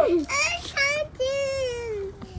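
A toddler's high-pitched sing-song voice: a few short syllables, then one long drawn-out note that slowly falls in pitch.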